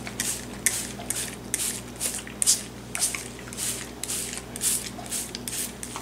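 Plastic trigger spray bottle spritzing beet juice over a vinyl doily laid on paper: a quick run of short hissing sprays, about two a second.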